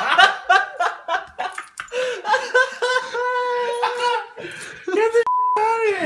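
Laughter, then a man's long drawn-out cry held on one note as his chest is waxed. A short censor bleep cuts in near the end.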